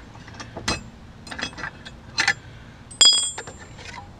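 Chrome two-inch hitch receiver cover being worked out of the tow hitch, metal clicking and knocking against metal, then a sharp ringing clink about three seconds in.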